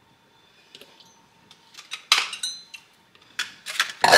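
Kitchen handling at a small saucepan as blackberries go in: a few light knocks and clinks, a short louder rattle about two seconds in, and a quick run of clicks against the pan near the end.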